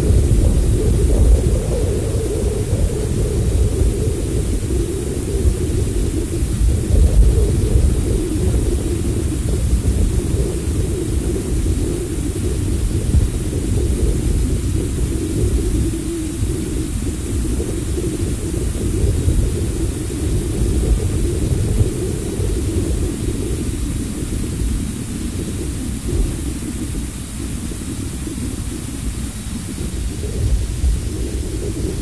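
Steady low rumbling wind noise on the microphone, easing slightly toward the end, over a faint constant high hiss.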